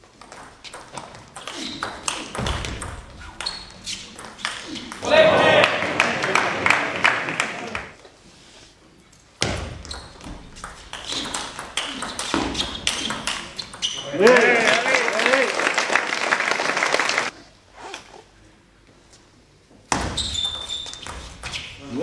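Two table tennis rallies: the ball clicking quickly back and forth off the bats and table. Each rally ends in a few seconds of loud shouting and cheering. A shorter burst of sound comes near the end.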